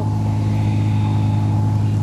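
A steady low-pitched drone holding one constant pitch, with no change in pitch or level.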